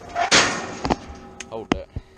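A brief loud rush of noise, then two sharp knocks, about a second in and again near the end.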